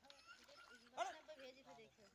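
Faint distant human voices, with a brief louder call or shout about a second in.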